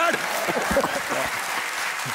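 Audience applauding, with a man's hearty laughter over it in the first second or so.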